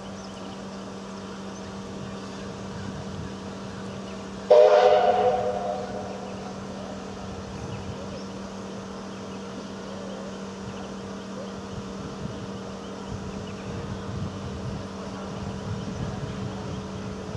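Paddle steamer's multi-tone steam whistle giving one short blast about four and a half seconds in, fading quickly, over a steady low hum from the boat underway.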